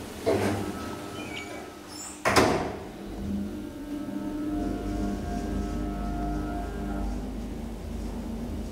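Traction elevator's doors sliding shut, ending in a loud thump about two seconds in, then the car starting off and travelling up: a steady low hum with a level motor whine.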